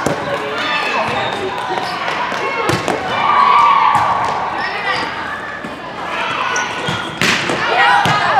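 Indoor volleyball gym: overlapping chatter of voices with scattered sharp thuds of volleyballs being struck and bouncing on the hard court, and a louder burst near the end.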